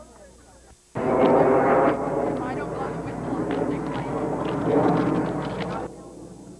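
Many young girls shouting and cheering together all at once, a loud jumble of children's voices. It starts suddenly about a second in after a quiet moment and cuts off just before the end.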